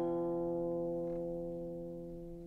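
Guqin strings ringing after a plucked chord, several notes sounding together and slowly fading away.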